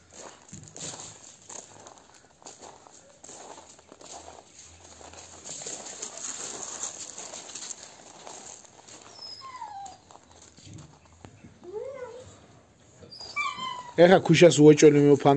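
Dogs moving about on gravel and loose dirt, with a faint scuffling sound and a few short whines near the end.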